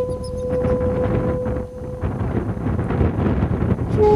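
Rumbling, gusting wind noise, with a held flute note from the background music that stops about halfway through; a new flute phrase starts right at the end.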